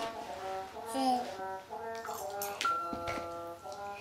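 An electronic baby activity-cube toy playing a simple tune of short, clear notes, with a baby's brief vocal sound about a second in.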